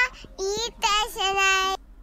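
A young child's high voice in long, drawn-out wavering phrases. The last one is held and then stops abruptly near the end.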